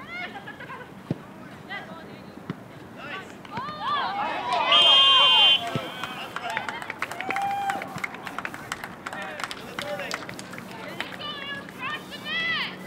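Players and onlookers shouting short calls across an outdoor soccer field, with a few sharp knocks of the ball being kicked. About five seconds in, a loud referee's whistle blows once for just under a second, the loudest sound.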